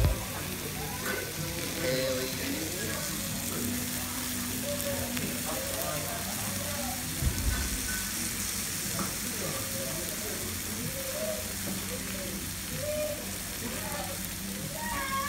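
Steak sizzling on a hot iron serving plate, a steady hiss, with faint background voices. There is a soft low bump about seven seconds in.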